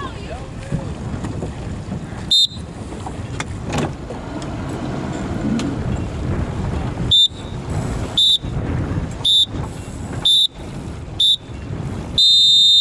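Electronic race-start countdown beeper: one short high beep about two and a half seconds in, then five short beeps about a second apart near the end, counting down the last seconds to the start. Wind buffets the microphone throughout.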